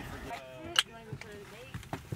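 Faint talking, with one sharp knock a little under a second in and a couple of small clicks near the end.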